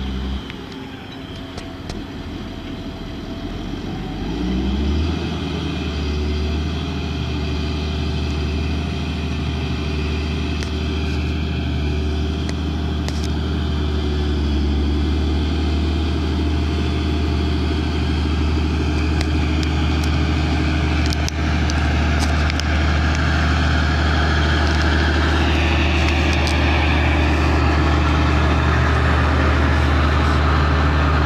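Fendt 936 tractor's six-cylinder diesel engine pulling a loaded slurry tanker with its trailing-hose boom down. The engine revs up about four to five seconds in, then runs steadily under load, growing louder as it comes closer.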